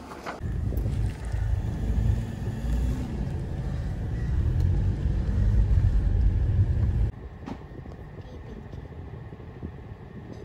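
Car engine and road noise heard from inside the cabin while driving, a steady low rumble that cuts off suddenly about two-thirds of the way through, leaving a quieter background.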